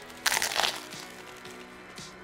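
A crunchy bite into a ham sandwich loaded with sweet potato fries and crispy shallots: one short crackling crunch about a quarter-second in, over quiet background music.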